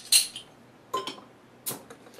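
A bottle opener prising the crown cap off a 22-ounce glass beer bottle: three sharp metallic clicks and clinks, with a little hiss of escaping carbonation.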